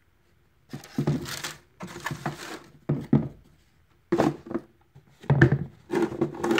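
Close handling noise: a run of rustles and light bumps as sneakers, their shoebox and its tissue paper are moved about near the phone's microphone, in several bursts with short pauses.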